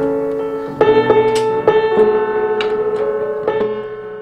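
Kimball console piano being tuned: the same mid-range note is struck over and over, about half a dozen times, each strike ringing on into the next as the tuning pin is set.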